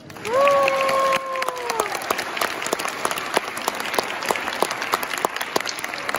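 Audience applauding at the end of a children's choir song. Over the first two seconds one voice gives a long cheer that rises, holds and then falls away.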